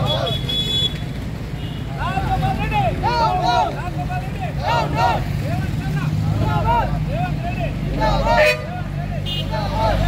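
A group of men shouting protest slogans in repeated short calls, over the steady low hum of vehicle engines on the road.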